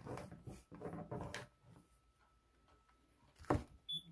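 Soft handling sounds of hair extensions being pressed onto a canvas panel, then a single sharp knock about three and a half seconds in as a hot glue gun is set down on the table.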